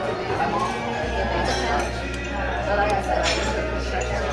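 Busy restaurant background: indistinct chatter of diners with light clinks of ceramic tableware and chopsticks. A low hum joins about a second in.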